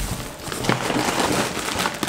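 Clear plastic grocery bag rustling and crinkling as it is handled and rummaged through.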